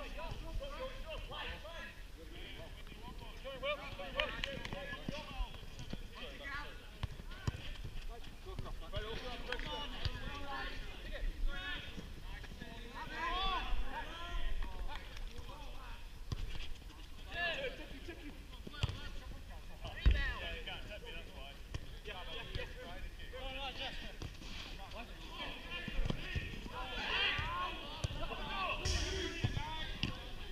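Five-a-side football on an artificial pitch: players shouting and calling to each other at a distance, indistinct, with scattered thuds of the ball being struck. The loudest is a single sharp thump about two-thirds of the way through.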